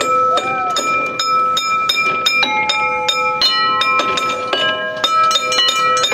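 Metal bell chimes on a playground music panel struck again and again, several a second, each at its own pitch and ringing on so the notes overlap.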